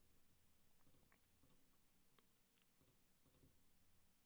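Near silence, with a handful of faint, scattered computer mouse clicks.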